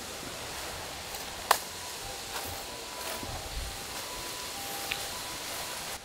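Steady outdoor hiss, with a faint thin tone that comes and goes and a single sharp click about a second and a half in.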